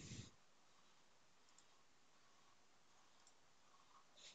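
Near silence with room tone, broken by one short click at the very start.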